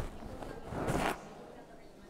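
A short rustling swoosh close to the microphone, about a second in.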